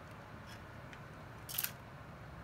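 Handling noise: a brief cluster of sharp plastic clicks about one and a half seconds in, with a few fainter single clicks before it, over faint steady room hiss.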